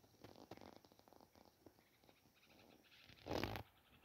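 Faint scattered clicks and rustles, with one louder brushing rustle of under half a second about three seconds in.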